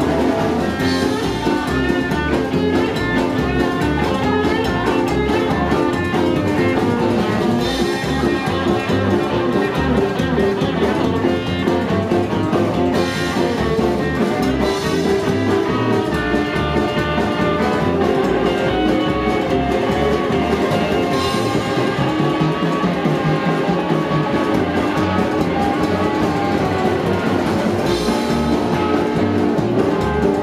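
Live rockabilly band playing an instrumental passage with no singing: upright double bass, hollow-body electric guitar, drum kit and saxophone, at a steady driving beat.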